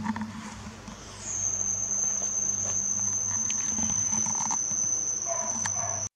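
An insect trilling: one steady high-pitched tone that starts about a second in and holds, over a low steady hum.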